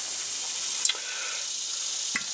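Steady hiss with one short click a little under a second in, from shotgun parts being handled.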